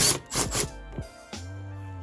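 Background music, ending on a held note. Over it, near the start, a sharp click and a brief scraping from a socket driver turning a door-panel screw loose.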